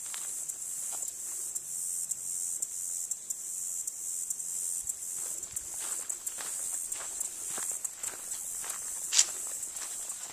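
A steady, high-pitched insect chorus, with irregular footsteps crunching on a gravel driveway. One louder step comes a little before the end.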